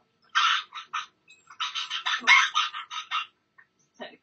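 Pet bird squawking in two runs of harsh, high calls, the second run longer, while its wing is caught.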